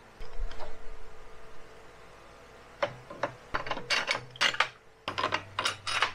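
Metal parts clinking and knocking as flange bearing housings and short steel tube spacers are fitted together on a steel welding table: a few clicks at the start, then a run of sharp clinks from about halfway on.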